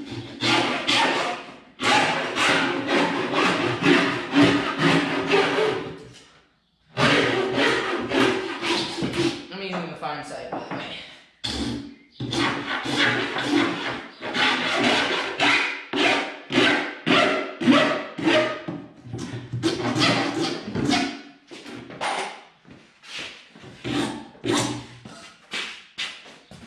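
Farrier's rasp filing the edge of a plywood tabletop in quick repeated strokes, about four a second, with a short break about six seconds in.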